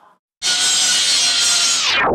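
A chainsaw running at a steady pitch, starting about half a second in and cut off abruptly at the end.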